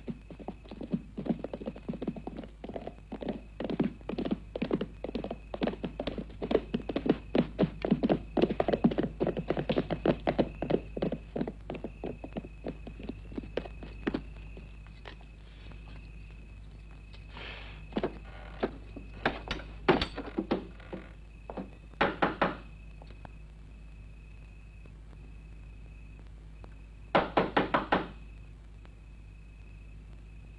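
Horses' hooves clattering in quick succession for the first dozen or so seconds as riders arrive, then stopping. After that come a few scattered thumps and, near the end, a quick burst of about four loud knocks on a wooden door. A thin, steady high tone runs under the quieter second half.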